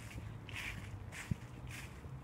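Footsteps walking on fallen dry leaves, a soft rustling crunch at an even pace of about two steps a second.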